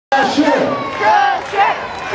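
Grandstand crowd cheering and yelling, many voices shouting at once.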